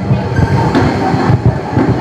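Low, uneven rumble through a stage public-address system in a pause between sung phrases, after the tail of a held note from a boy's voice fades at the start.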